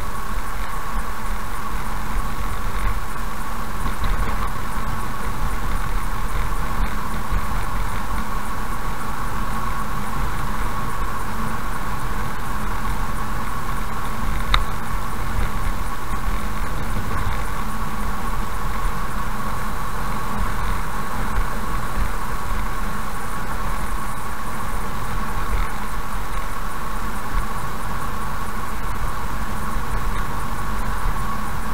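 Car driving steadily at about 55 km/h, with continuous road and engine noise heard from inside the cabin. A single short click comes about halfway through.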